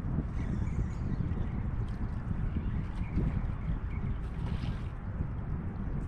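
Wind buffeting the microphone, a constant, uneven low rumble.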